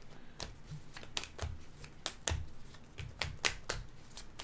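A deck of tarot cards being shuffled by hand, making a string of irregular crisp clicks and snaps as the cards slap together.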